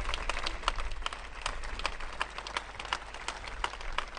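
Audience applauding: many hands clapping unevenly, with individual claps standing out, quieter than the speech around it.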